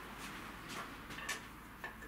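Faint room tone with a steady low hum and about four light clicks, roughly one every half second.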